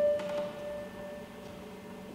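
A single instrument note at about the pitch the singers then start on, giving their starting note. It fades away over about a second and a half, leaving a hushed church room.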